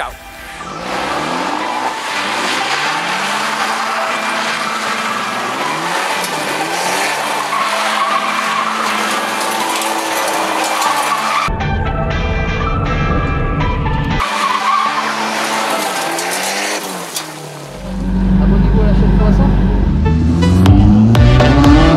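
Abarth 124 engine revving with tyres skidding on gravel, in edited clips over background music. The sound changes abruptly about 11 seconds in and grows louder near the end.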